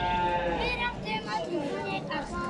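Cattle mooing: one long, steady call that ends about half a second in, followed by people talking.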